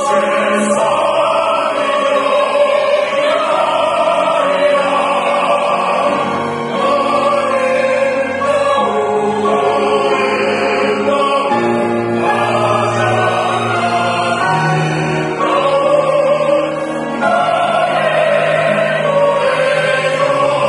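A mixed ensemble of sopranos, tenors and baritones sings a Korean art song in harmony, with piano and strings accompanying. The voices hold long sung phrases, easing briefly twice between them.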